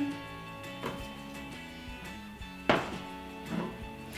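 Background music, with a few short knocks as frozen banana pieces are tipped into the plastic bowl of a food processor; the loudest comes about two and a half seconds in.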